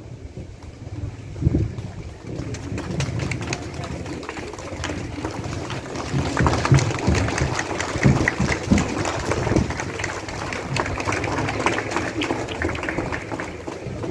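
Outdoor crowd noise: many voices at once, with a dense patter of short sharp sounds that thickens from about six seconds in.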